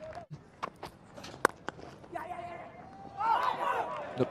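Low cricket-ground ambience broken by a few sharp clicks, one clearly louder about a second and a half in. Near the end come distant voices calling out.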